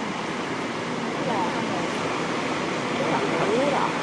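Steady rushing of a waterfall plunging into a sea cove, heard from a lookout above, blended with the wash of the water below.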